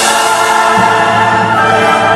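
Loud choral music: a choir holding sustained chords with instrumental backing.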